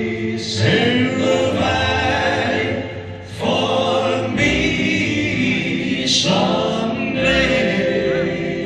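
Slow gospel song: a male lead voice sings with choir-like group voices and accompaniment, easing off briefly about three seconds in.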